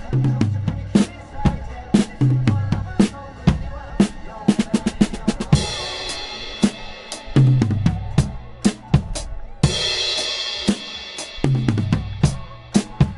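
Acoustic drum kit played with sticks: kick drum and snare strikes in a steady driving beat, with crash cymbals ringing out about halfway through and again near the end.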